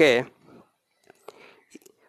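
Faint, light taps and scrapes of a pen on paper: a few small clicks in the second half, after one short spoken word at the start.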